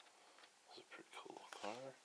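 A man's voice murmuring very quietly, ending in a short hum near the end, over near silence.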